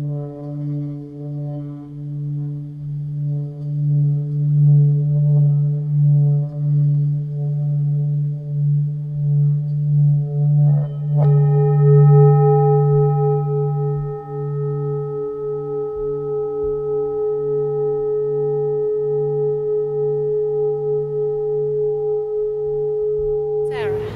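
Meditative drone music: a low, wavering hum with a few steady overtones. About eleven seconds in a single struck, bell-like tone sets in and rings on steadily to the end.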